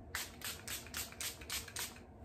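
Ciaté London Everyday Vacay setting spray, a pump mist bottle, spritzed at the face in seven quick hissing sprays, about four a second.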